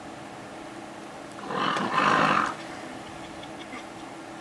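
A lion growls once, a rough call lasting about a second near the middle, over a faint steady background hiss.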